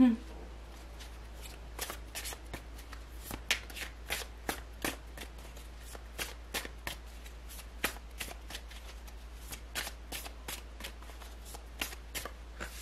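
A deck of tarot cards being shuffled by hand: a long run of short, irregular card clicks and flicks, about three or four a second.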